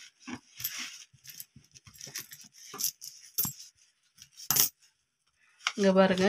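Metal coins clinking and sliding against one another as they are handled on a cloth, with paper banknotes rustling. The sound comes as short, scattered clinks, the sharpest about four and a half seconds in.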